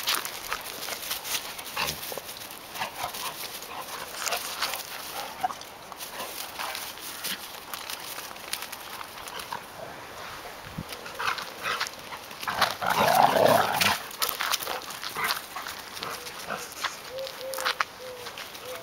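Two dogs at rough play on grass: scattered short scuffling noises, with one louder dog sound lasting about a second around thirteen seconds in.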